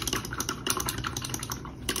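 Light, quick, irregular clicking and tapping, like small hard objects being handled on a tabletop.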